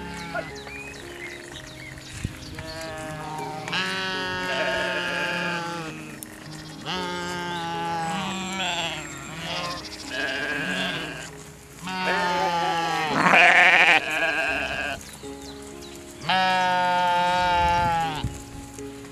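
Young goats bleating, about five long calls a few seconds apart, one with a strong tremble, over background music with sustained notes.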